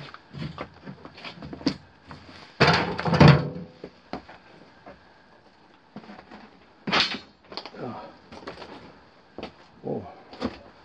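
Footsteps crunching and scuffing over loose rock rubble, with scattered knocks of rock on rock. The loudest is a clattering scrape about three seconds in; a sharp knock follows about seven seconds in.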